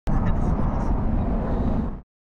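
Steady low roar of a jet aircraft engine, cutting in abruptly at the start and fading out at the end.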